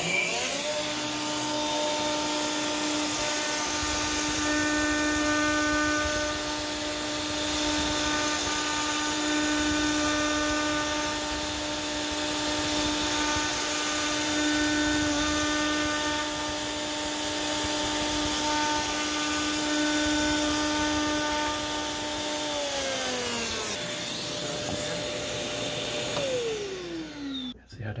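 Stepcraft M.1000 CNC router running a job. The spindle spins up to a steady whine and mills a foam board with the dust-extraction vacuum going. About 23 seconds in the spindle winds down in falling pitch, and another motor tone slides down near the end.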